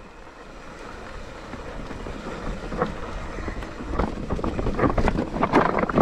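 Nukeproof Mega mountain bike descending a dirt and rocky trail: tyres rolling and the bike clattering over stones, the rattles growing denser from about halfway. Wind rumbles on the microphone throughout.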